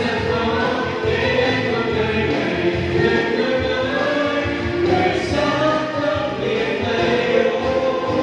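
A mixed vocal group of young women and men singing a Vietnamese song together in harmony through microphones.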